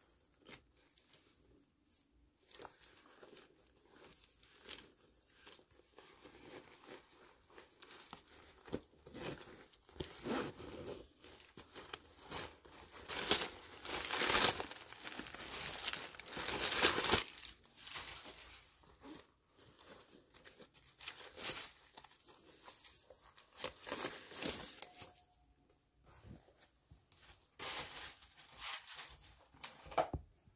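Paper stuffing inside a vegan-leather clutch crinkling and rustling as it is handled, in irregular bursts that are loudest about halfway through.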